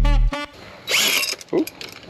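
Background music with heavy bass notes stops just after the start. About a second in, a cordless drill fitted with a paint-mixing paddle is triggered briefly, a short whirring spin-up, followed by a short exclaimed "ooh".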